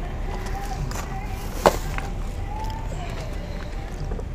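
A single sharp knock about one and a half seconds in, over steady outdoor background noise.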